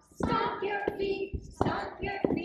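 A group of young children singing a song together, with sharp hand-struck beats about every three-quarters of a second.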